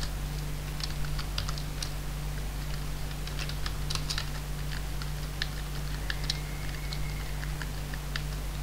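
Computer keyboard typing: irregular, quick keystrokes as lines of code are entered, over a steady low electrical hum.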